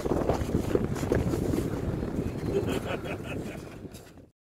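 Wind buffeting the phone's microphone: a steady low rumble that fades out near the end.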